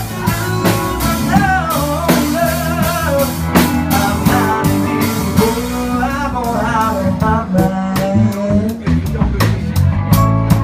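Live blues band playing: electric guitar, drum kit and keyboard, with a male vocal singing the melody.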